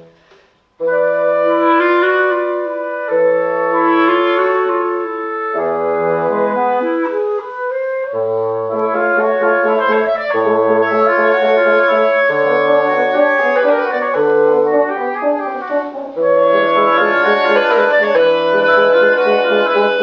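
Woodwind quintet of flute, oboe, clarinet, French horn and bassoon playing chamber music live, several sustained lines at once over short low bassoon notes. The ensemble breaks off for a moment about a second in, then comes back in together.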